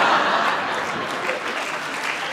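A large audience applauding, the clapping easing off slightly as it goes on.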